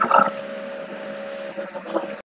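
A garbled, voice-like fragment over a steady two-tone hum and light hiss, then the hum and hiss alone with a brief blip near the end. It is a processed white-noise recording of the kind played back as a spirit voice in instrumental transcommunication.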